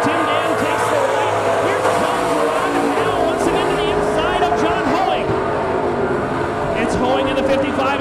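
Several late model street stock race car engines running at racing speed on a dirt oval, their pitch rising and falling as the cars go through the turns.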